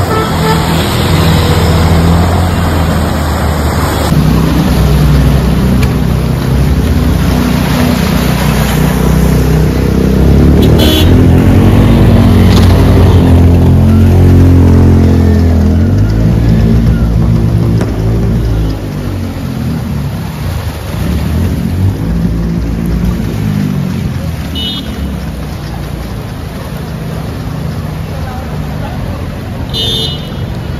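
Motorcycle and car engines revving as they push through deep floodwater, over the wash of splashing water. The engines rise and fall in pitch and are loudest through the first half, then grow quieter.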